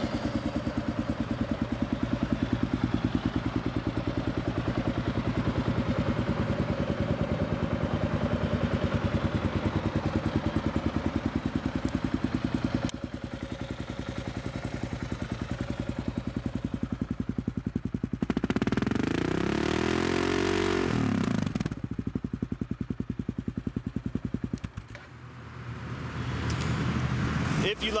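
Kawasaki KLR650's 651cc liquid-cooled, carbureted single-cylinder engine idling with an even firing beat through its FMF Powerbomb exhaust. About twenty seconds in, the throttle is blipped once, the revs rising and then falling back to idle.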